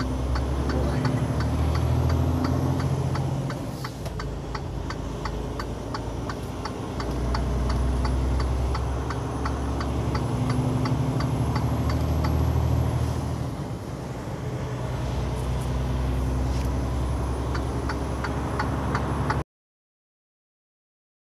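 Semi-truck's engine and road noise at highway speed, heard from inside the cab as a low steady drone that swells and eases, with a steady ticking about three times a second over it. The sound cuts off abruptly near the end.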